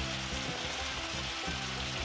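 Eggplant slices and meatballs frying in hot oil, a steady sizzle, under quiet background music with held notes.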